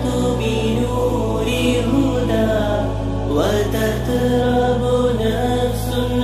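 Background Arabic nasheed: a drawn-out sung vocal line over a low held drone that shifts pitch every second or two, with a quick upward vocal slide about three and a half seconds in.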